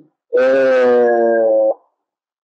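A man's voice holding one steady, drawn-out vowel for about a second and a half, a hesitation sound like a long "eeh", before it stops abruptly.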